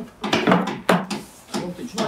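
Wooden birdhouse being handled and turned over, its boards knocking, with one sharp wooden knock about a second in. A man's voice joins near the end.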